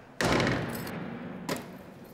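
A loud, sudden thud with a lingering tail, followed about a second later by a second, lighter knock.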